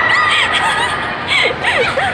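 Young women squealing and laughing excitedly in high-pitched voices, over the noise of a crowd.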